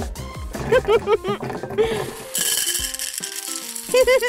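Candies rattling down a plastic pipe of a homemade candy machine in a burst of about a second, midway through, over background music.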